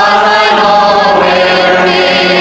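Background choral music: voices singing held notes with vibrato, changing pitch every half-second or so.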